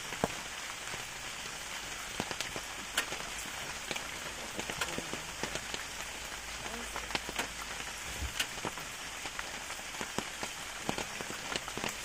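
Steady rain falling on forest vegetation, an even hiss with many scattered sharp drop clicks.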